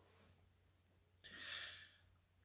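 Near silence, then a man's short audible breath a little over a second in, lasting about half a second.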